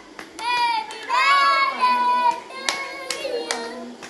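Voices singing, a child's among them, punctuated by sharp hand claps, three of them in quick succession near the end.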